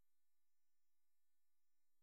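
Near silence: room tone with only a very faint steady hum.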